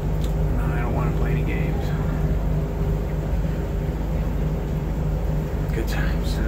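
A machine running with a steady low hum, even throughout, with faint voices behind it.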